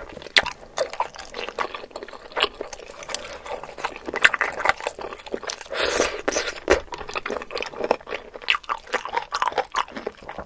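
Close-miked wet eating sounds as spoonfuls of seblak, instant noodles in a thick spicy sauce, are taken from a wooden spoon: slurps and chewing with many small wet mouth clicks, the loudest slurps about four and six seconds in.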